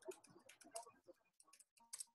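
Faint computer keyboard typing: a loose, irregular run of soft key clicks as a phrase is typed out.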